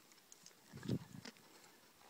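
Faint hoof falls of a horse walking on soft arena sand, the clearest a short, low thud about a second in.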